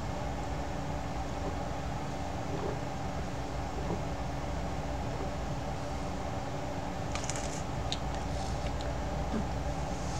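Steady background hum, with a few level tones over a low rumble. A few faint clicks come about seven seconds in.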